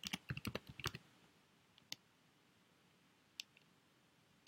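Computer keyboard typing: a quick run of keystrokes in the first second, then two single clicks, all faint.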